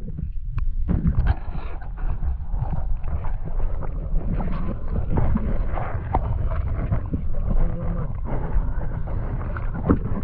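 Muffled underwater rumble and sloshing heard through a submerged action camera's waterproof housing, with scattered knocks as the housing and net move through the water.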